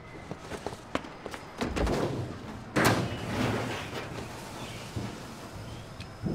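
A few light knocks, then a low thud, then one heavy slam about three seconds in that rings on for about a second.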